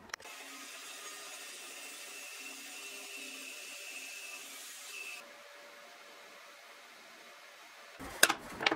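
Bandsaw cutting through a wooden handle blank: a steady hiss with a faint high whine that stops suddenly about five seconds in, leaving only faint room noise.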